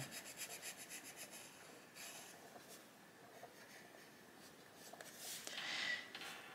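Faint coloured pencil rubbing on paper in quick, short back-and-forth strokes, which die away after about two seconds. A soft swish follows near the end.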